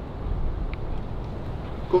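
Steady low outdoor rumble with no club strike in it, and a faint brief chirp about three-quarters of a second in; a man's voice begins at the very end.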